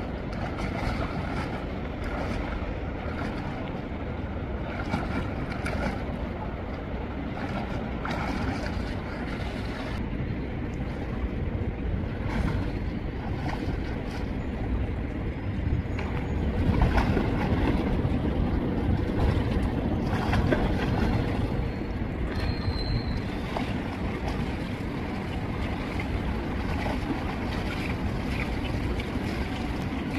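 Water splashing from a swimmer doing breaststroke in a pool, under a steady rushing noise with low rumble on the microphone; it grows louder for a few seconds about halfway through.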